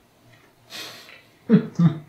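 A man breathes out sharply in a short hiss, then gives a brief laugh near the end.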